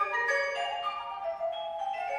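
Mallet keyboard percussion playing a quick run of ringing, overlapping notes in a contemporary piece for flute and percussion.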